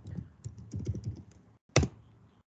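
Computer keyboard keys tapped in quick succession as a password is typed at a Linux su prompt, with one louder keystroke near the end as it is submitted.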